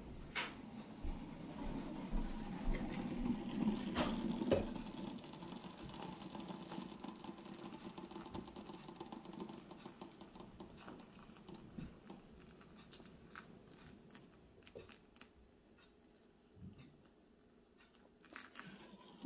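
A few knocks and a low rumble in the first few seconds. Then a faint, thin pour of boiling water from a stainless steel kettle into a small slow cooker of chopped turkey tail mushroom, fading away toward the end.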